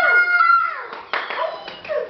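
Children's voices crowing like a rooster: one long held cry that breaks off a little past half a second in, followed by several shorter falling cries.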